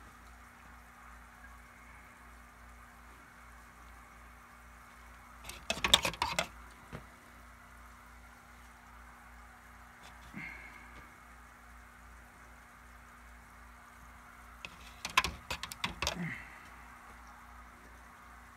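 A pH pen being handled in a plastic cup of nutrient solution: two short bursts of knocking and clatter, about six seconds in and again around fifteen seconds, with a lighter knock in between. A steady low hum runs under it.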